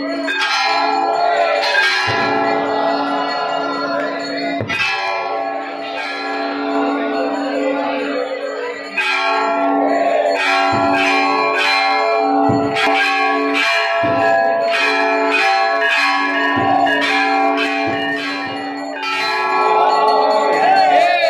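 Hindu temple bells ringing, struck over and over so that the ringing tones overlap; from about halfway through the strikes come in a quicker, steady rhythm.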